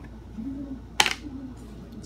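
Lid of a small cardboard box lifted off and set down on a wooden table, with one sharp tap about a second in.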